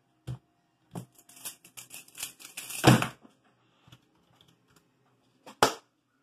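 Pyraminx puzzle being turned very fast in a speedsolve: a quick run of plastic clicks and clacks lasting about two seconds and ending in a loud knock. A single click comes before it, and another sharp knock comes near the end.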